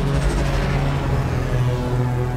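Film trailer score: a low, sustained synthesizer drone with a swelling rush of noise over it in the first second.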